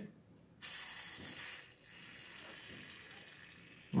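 WD-40-style rust-remover aerosol hissing through its straw nozzle into an opened ball bearing, flushing out the old grease: one hiss about a second long, then a fainter one.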